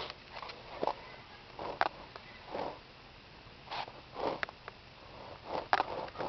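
A series of short, irregularly spaced sniffs and breaths close to the microphone, about nine in a few seconds.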